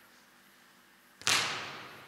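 A volleyball struck once with a sharp slap about a second in, a forearm pass, its sound ringing on in a large echoing hall.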